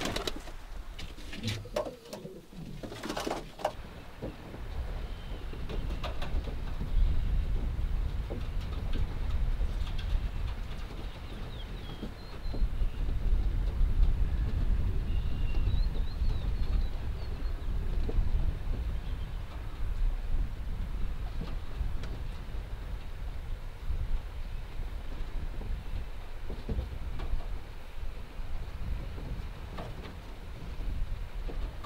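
Adana pigeons cooing over a steady low rumble, with a few sharp knocks in the first few seconds.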